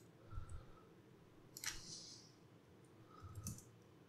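A few faint computer clicks, mouse and keyboard, about three spread out over quiet room tone.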